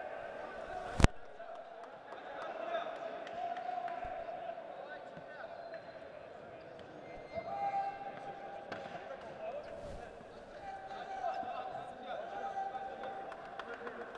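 Indistinct voices echoing in a large sports hall, with one sharp slap about a second in.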